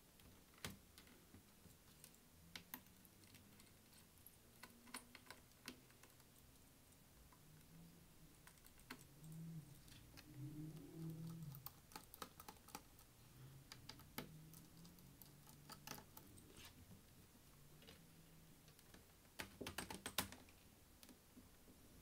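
Faint, scattered small clicks and ticks of a precision screwdriver turning out a laptop's bottom-cover screws and of the screws being handled. A quick run of louder clicks comes near the end.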